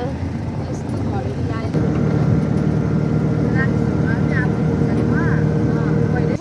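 Engine drone and road noise heard from on board a moving vehicle: a steady, even hum sets in a couple of seconds in and stops suddenly at the very end.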